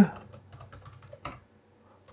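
Typing on a computer keyboard: a quick run of key clicks that stops about a second and a half in.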